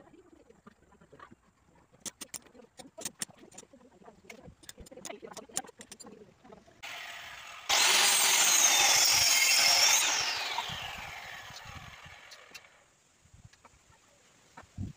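Small clicks and scrapes of a blade carving a wooden sculpture by hand. About seven seconds in, a handheld electric circular saw starts and cuts through a wooden board for a couple of seconds. It is then switched off and its motor winds down, falling in pitch and fading over the next few seconds.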